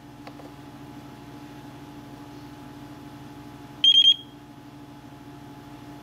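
RadioMaster TX16S transmitter giving a quick run of about four short, high beeps about four seconds in, as its scroll wheel is turned through the menu. A steady low hum runs underneath.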